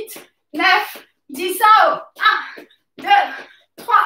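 A voice in short bursts, a little more than one a second, with silence between each.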